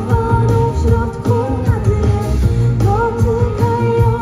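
Live pop music: women singing over a band of keyboards, electric guitar and drums.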